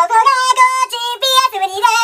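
A high, child-like voice singing a quick string of short syllables on a few steady notes that jump up and down.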